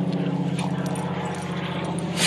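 A steady low engine drone, one unchanging pitch throughout.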